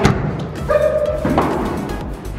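Background music with a sharp thud at the start, a football being kicked indoors, and another knock about a second later.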